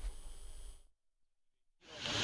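Faint background noise with no clear speech, cut off to dead silence a little under a second in; the background noise comes back just before the end.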